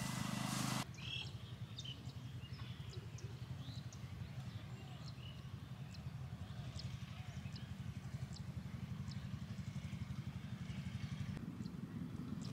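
Outdoor ambience: a low, fluttering rumble with faint, scattered short chirps and clicks above it. A louder steady sound cuts off abruptly about a second in.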